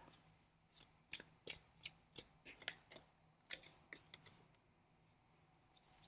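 Faint, scattered clicks and snaps of a deck of tarot cards being handled as a card is drawn and laid on the table: about fifteen short ticks, stopping a little after four seconds in.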